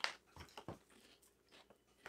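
Faint crunching of roasted almonds being chewed, a few sharp crunches in the first second, then quiet.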